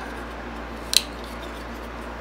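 A single sharp metallic click about a second in: the bearing-pivoted blade of a small MKM liner-lock folding knife flicked open one-handed and snapping into its lock.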